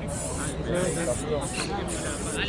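People talking, with a hiss of background noise that comes and goes.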